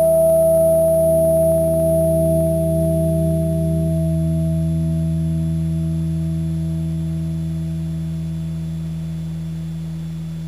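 Amplified electric guitar's final chord ringing out with long sustain, fading slowly; a few of its notes stop about four seconds in.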